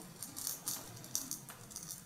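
A bright, jingly rattle in a run of quick shakes, strongest near the middle, that cuts off suddenly at the end.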